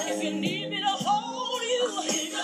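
A song: a sung melody sliding between notes over steady, held accompaniment.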